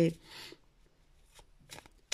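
A short soft rustle, then a few faint clicks in a quiet pause between words.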